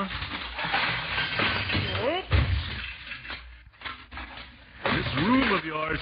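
Radio sound effect of a boy rummaging through a pile of junk: objects clattering and crashing, with one heavy hit a little over two seconds in. A voice is heard briefly among the clatter and again near the end.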